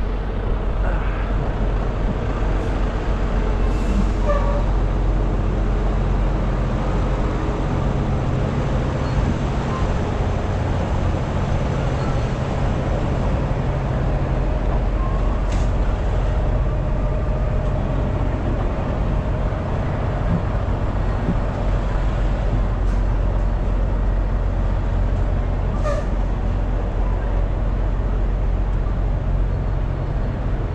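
Parked semi-trucks' diesel engines idling: a steady low drone with a few faint clicks over it.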